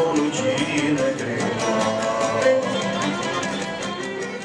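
Cretan folk dance music: a bowed lyra melody over strummed laouto, with a quick even beat.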